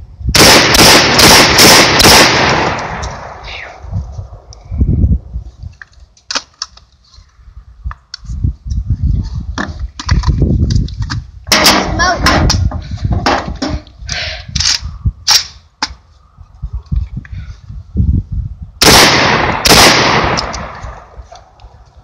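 Catamount Fury II 12-gauge semi-automatic shotgun firing about five rounds in quick succession, each shot echoing away. Sharp metallic clacks follow as the action is worked by hand to clear a jam with cheap short-brass shells, and the shotgun fires again in a quick group near the end.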